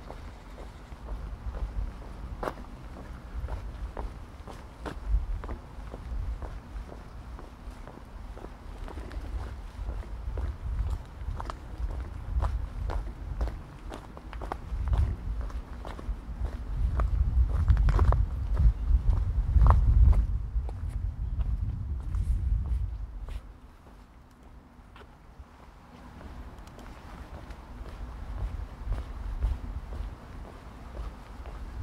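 Footsteps of a walker on paths and cobblestones, heard as a string of sharp steps. Under them a low rumble swells to its loudest in the second half, then drops away suddenly about three-quarters of the way through.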